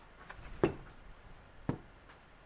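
Two short knocks, a little over a second apart, from a cap-and-ball revolver and a brass powder measure being handled as the gun is stood muzzle-up for loading.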